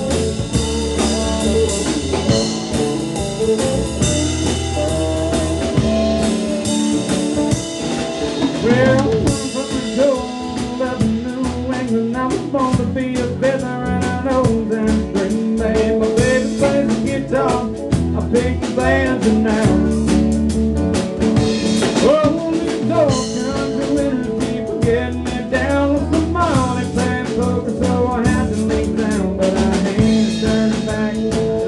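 Live band playing an instrumental stretch of a country-rock song, with guitar and drum kit keeping a steady beat, and a wavering lead line coming in about nine seconds in.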